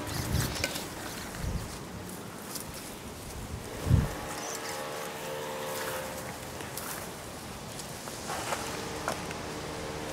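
Dry grass and brush rustling and crackling under a beagle puppy's paws and nose as it roots about, with a few low thumps, the loudest about four seconds in.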